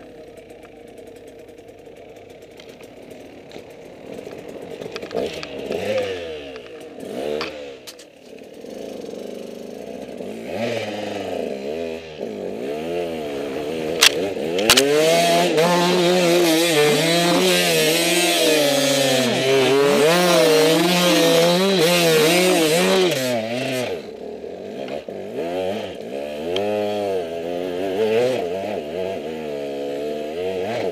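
Motorcycle engine revving up and down over and over, the pitch wavering with each blip of the throttle. It grows louder through the middle and is loudest for several seconds before dropping back near the end.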